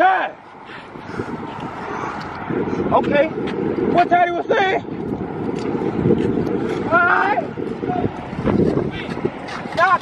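A low rumbling noise swells for about five seconds in the middle and then fades, broken by a few brief distant shouted words.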